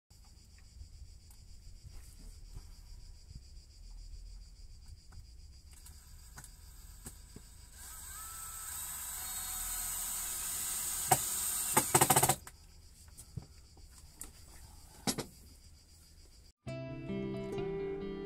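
Faint clicks and knocks of hand work on battery terminals and cables over a steady high hiss. Partway through, a louder rising rushing sound ends in a few sharp knocks. Near the end it cuts suddenly to guitar music.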